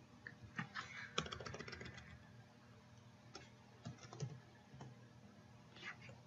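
Faint computer keyboard typing: a quick run of keystrokes about a second in, then a few scattered single key clicks.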